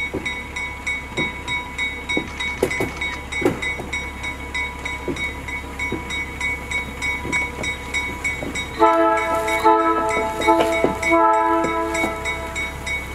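Slow train of vintage electric locomotives rolling over the rails, with scattered short squeals and creaks from the wheels, over a steady rapid high ringing. Near the end the locomotive horn sounds two chord-like blasts, the first beginning about nine seconds in.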